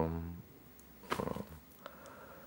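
A man's voice drawing out a long, level 'euh' of hesitation that trails off in the first half second, then a shorter 'euh' just after a second in, with quiet room tone between.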